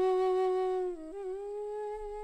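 Background film score: one long sustained note with a soft, hummed or wind-like tone. About a second in it dips briefly, then settles on a slightly higher pitch.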